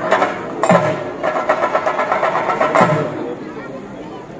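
Ritual drumming for a theyyam: deep drum strokes that drop in pitch, about a second in and again near three seconds, over continuous drumming and the voices of a crowd.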